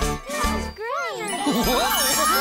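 Twinkling, chiming magic sound effect with tones sweeping up and down, over light music: the sparkle cue of a toy coming to life.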